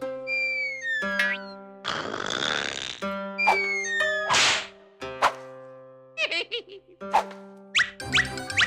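Cartoon snoring sound effect: a falling whistle alternating with a breathy rush, twice, over held music notes. In the second half come a short wobbling boing-like effect and a couple of sharp clicks.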